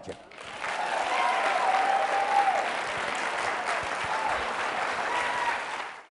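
Audience applauding after the closing "thank you" of a talk. It swells within the first half second, holds steady, and stops abruptly at the very end.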